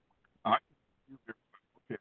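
Speech over a remote call link that is breaking up badly: short clipped fragments of a voice with dropouts to silence between them, plus a brief 'uh' and 'okay'.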